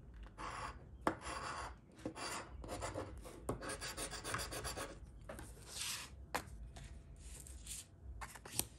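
A coin scraping the coating off a paper Ohio Lottery Hot 7's scratch-off ticket, in quick runs of short rasping strokes with brief pauses and a few sharp clicks.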